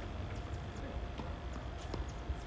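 Faint, scattered taps on a hard tennis court, over a low steady rumble.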